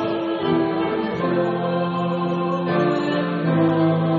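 Choir singing a slow hymn accompanied by piano, acoustic guitar and saxophone, with long held chords that change about a second in and again near the end.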